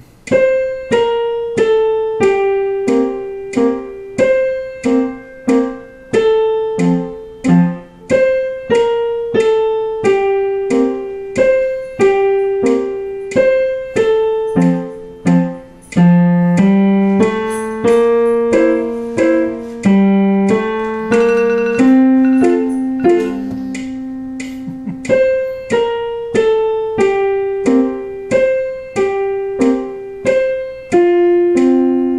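Digital piano playing a simple waltz in 3/4 time in F major, a beginner's practice piece: evenly spaced single notes and chords at about two a second, with a few longer held notes midway.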